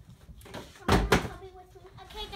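Two loud thumps about a quarter of a second apart, about a second in, like a door shutting.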